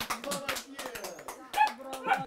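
A small group of people clapping their hands in quick, uneven claps, mixed with brief excited voices.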